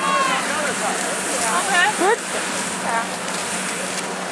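Short bursts of talk, with a one-word question about two seconds in, over a steady rushing hiss.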